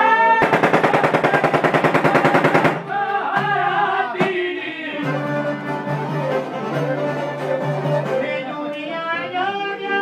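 Albanian folk song, male singing with instrumental accompaniment. Near the start a loud, very rapid, evenly pulsed run of notes lasts about two seconds before the voice and instruments carry on.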